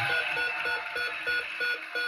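The Price is Right Big Wheel ticking as its pegs pass the flapper: a regular run of ticks, several a second, that slows as the wheel comes to rest. It is heard through a TV speaker.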